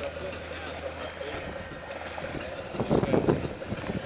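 Steady wind and water noise aboard a sailboat under way in strong wind, with a short burst of voices about three seconds in.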